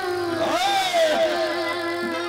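A boy singing a drawn-out, gliding melodic phrase into a microphone, amplified through stage speakers, over a steady held note from the accompaniment.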